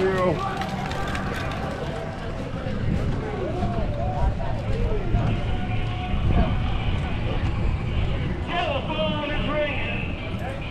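Voices of passers-by talking, not close enough to make out, over a steady low rumble.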